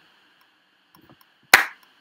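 A single loud, sharp click about one and a half seconds in, with a few faint clicks just before it; otherwise near quiet.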